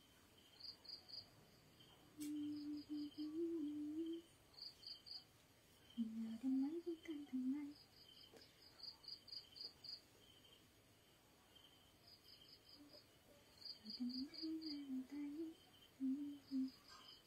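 A woman humming softly to herself in three short, wandering phrases, over faint insect chirping in quick repeated pulses.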